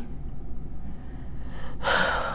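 A person's quick in-breath through the mouth near the end, taken before speaking, after a short pause with only a low steady hum.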